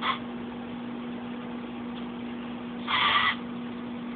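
Small hobby robot's DC gear motors whining briefly in a short pitched burst about three seconds in, with a shorter blip at the start, over a steady low hum.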